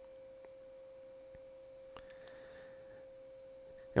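A faint, steady single tone, like an electrical whine in the recording, with two small clicks about two seconds in.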